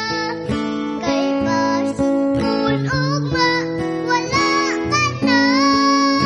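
A Christian worship song: a voice singing long, held notes over strummed acoustic guitar chords.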